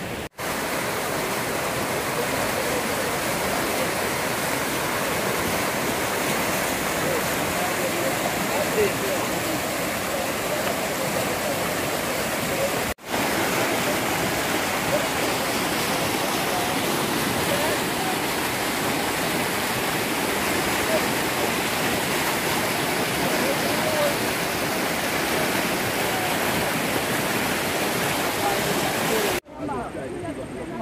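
Swollen, flood-fed river rushing over rocks and gravel: a loud, steady rush of churning water. It cuts out briefly three times: just after the start, about halfway, and near the end.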